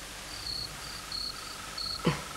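Crickets chirping at night in short, repeated high trills, with a second, lower and steadier pulsing trill joining about a second in.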